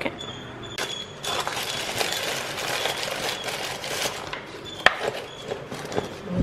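Tissue paper rustling and crinkling as it is folded and pressed down inside a cardboard gift box, with one sharp tap about five seconds in.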